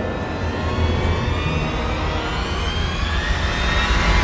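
A machine-like drone over a low rumble, its tones climbing steadily in pitch and growing a little louder toward the end, like a rising sound-design effect in a trailer.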